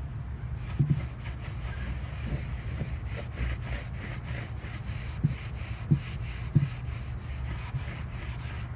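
A damp cloth rag rubbed back and forth over a milk-painted wooden tabletop in quick, repeated scrubbing strokes, wet-distressing the paint so that it lifts and chips. A few low thumps come between the strokes.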